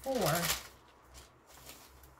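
Thin Bible pages rustling as they are turned and handled. There is a loud rustle at the start, then faint scraps of paper handling.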